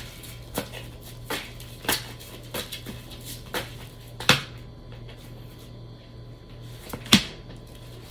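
A tarot deck being shuffled by hand: a run of short card taps and snaps about every half second to second, with a sharper snap about four seconds in and another near the end as a card comes out of the deck.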